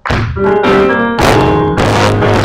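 Live worship band music with an electronic keyboard playing held chords and sharp accented hits, a strong one just over a second in.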